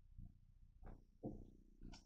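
Near silence: room tone, with a few faint, brief soft sounds.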